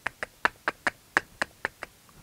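A quick run of about ten sharp clicks, roughly five a second, made by hand.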